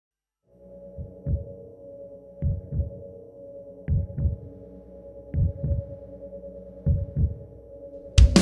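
Intro of a doom metal track: a steady low drone starting about half a second in, with a heartbeat-like double thump repeating about every one and a half seconds, five times.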